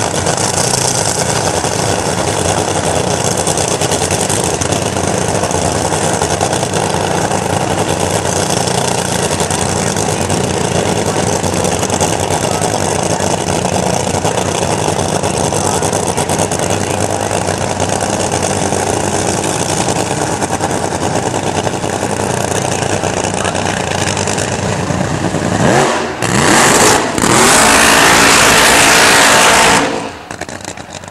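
Supercharged nitro-burning V8 of an AA/FC fuel funny car running loudly and steadily at idle. Near the end it revs up with a rising sweep into a full-throttle burnout, the loudest part, which cuts off abruptly at the end.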